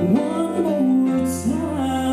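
Southern gospel song: a woman singing a long, sliding sung phrase over strummed acoustic guitar.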